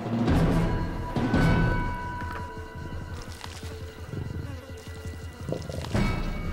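A male lion growling low while feeding at a carcass, loudest in two swells in the first two seconds, over background music.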